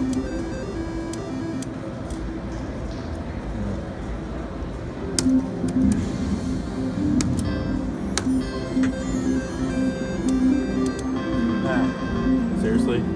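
Casino slot-floor din: electronic chimes and short jingles from slot machines over a murmur of voices. A few sharp clicks come through as a three-reel slot machine is played.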